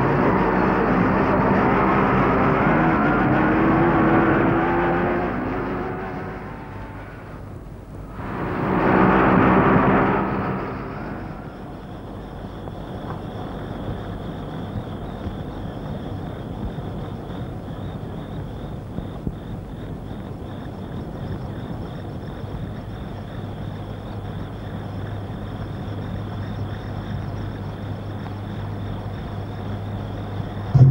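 Motorcycle engine running as the bike approaches, its note rising, then fading away; a second brief pass of the engine comes about nine seconds in. After that, only a quieter steady background noise with a thin high tone remains.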